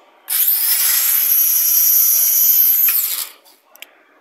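Vintage slot cars' small electric motors whining at full power down a drag strip. The high-pitched whine starts suddenly, holds for about three seconds and then dies away. By the racer's account, the blue Cobra lost its drive gear on this run.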